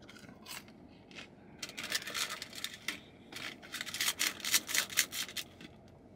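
Someone chewing crunchy fried food close to the microphone, in two bouts of crackly crunching.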